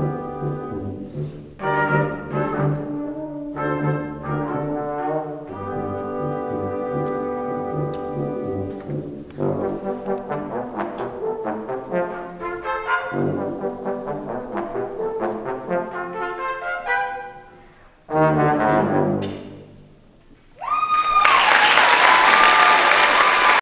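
A brass quintet of two trumpets, French horn, trombone and tuba plays the close of a tango in short, clipped notes, ending on a loud final chord after a brief pause. Near the end, applause breaks out with a long held cheer over it.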